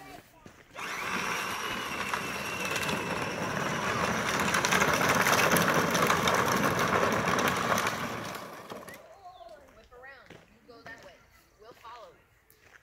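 A Power Wheels ride-on toy truck, rewired from its stock 6-volt battery to an 18-volt Ryobi tool battery, driving on asphalt: its electric motors and gearboxes whine and its hard plastic wheels rattle. The sound starts suddenly about a second in, grows loudest in the middle and cuts off near the nine-second mark.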